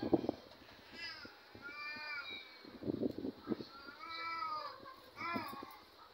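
About four short high-pitched cries, each rising and then falling in pitch, spaced a second or so apart.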